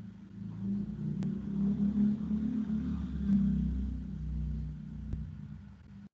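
A low rumble picked up by an open microphone on a video call. It swells after about a second and fades towards the end, with three faint clicks along the way.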